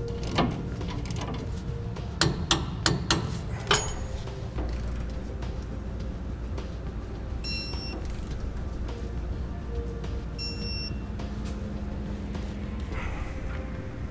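Socket ratchet tightening steel hitch side-plate bolts, with a run of irregular clicks during the first few seconds. After that comes a steady low hum, with two brief high ringing tones a few seconds apart.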